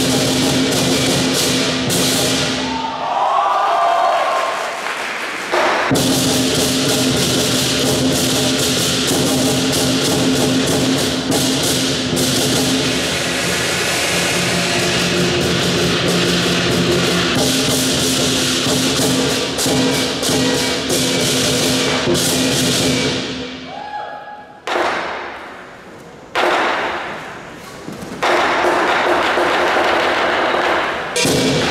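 Lion dance percussion band playing loud and fast: a big drum struck with crashing cymbals and a ringing gong, keeping the beat for the lion's moves, with a brief drop in loudness about three quarters of the way through.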